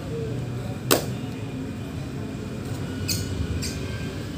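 A person doing burpees on a mat, with one sharp impact about a second in and two short hissing sounds near the end, over a steady low rumble of background noise.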